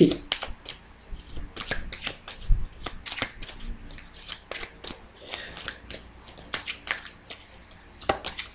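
A deck of oracle cards being shuffled by hand: a continuous run of irregular card flicks, several a second.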